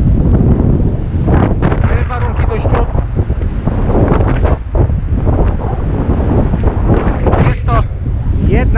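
Strong, gusty wind buffeting the camera's microphone: a loud, uneven rumble that surges and dips.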